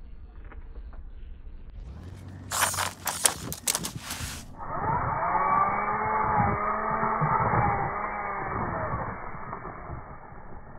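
A burst of sharp clattering clicks about two and a half seconds in. Then, from about halfway, the electric motor and gear drive of a 1/24-scale RC rock crawler whine, the pitch rising and falling several times as it drives. The crawler is an Axial SCX24 on a MoFo Bouncer chassis, running 3S through a Furitek Lizard Pro ESC.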